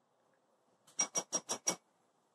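A spoon striking the rim of a small ceramic bowl five times in quick succession, each strike ringing at the same pitch, as dye is tapped off the spoon.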